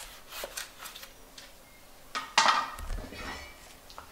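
Light knocks and clinks of an iron hoe blade being handled against its eucalyptus wood handle, with one louder metallic clatter a little over two seconds in.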